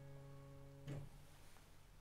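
A plucked-sounding keyboard chord, the chord on D with the octave of the bass as its highest note, rings on and fades. It stops about a second in with a soft click as it is released, leaving faint room noise.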